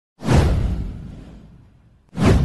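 A whoosh sound effect with a deep low rumble under it. It comes in quickly, just after the start, and fades away over about a second and a half.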